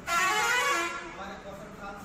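A single loud honk, starting suddenly and lasting just under a second, like a vehicle horn sounding once.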